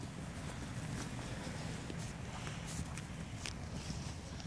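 Faint, irregular footfalls on soft, wet ground over a steady outdoor hiss.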